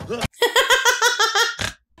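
A person laughing: a high-pitched run of about eight quick 'ha' pulses lasting about a second, which then stops.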